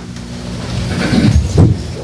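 Several office chairs being pulled out and rolled as a group of people sit down, with shuffling and rustling, loudest about a second and a half in.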